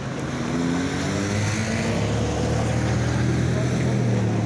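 A motor vehicle's engine running close by and accelerating, its pitch rising over the first two seconds, over a steady low engine hum that grows louder.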